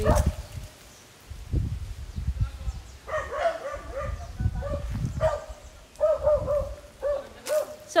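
A dog barking in short, pitched yips, about three a second, starting about three seconds in, over a low rumble.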